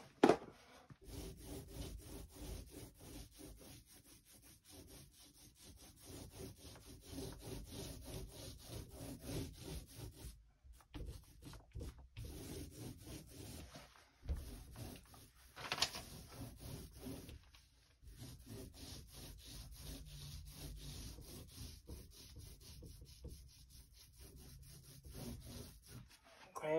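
Angled paintbrush stroking wet waterborne alkyd paint across the bottom of a door: a faint, rapid, steady brushing rub, with a sharp tap at the very start.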